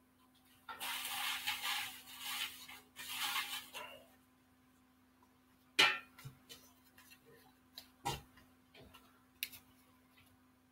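Hand rummaging through folded paper raffle tickets in a stainless steel pot, a rustling shuffle lasting about three seconds. Then a sharp knock, a second knock and small paper clicks as a ticket is drawn and unfolded.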